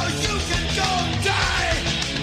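Rock music with a sung vocal, dense and steady throughout.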